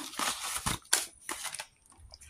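Paper banknotes rustling and flicking as a stack of cash is counted and handled, with a couple of sharp knocks in the first second. After that it dies down to faint scattered taps.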